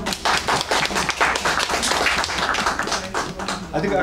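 A small group of people clapping their hands in applause, the claps dense and irregular throughout.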